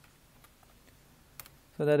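A few faint computer-keyboard keystrokes, with one sharper key click about a second and a half in; a man starts speaking near the end.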